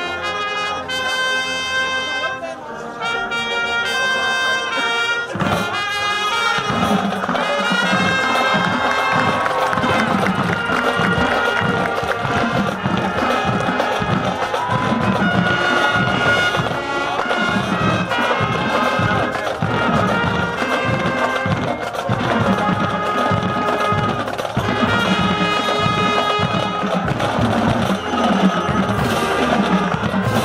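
Marching band brass: a trumpet and a second brass horn play a duet for the first few seconds. About six seconds in, the full band with its drums comes in and plays on to a steady beat.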